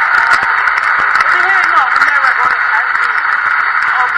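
Studio audience applauding: dense, steady clapping throughout, with a few voices calling out in the crowd.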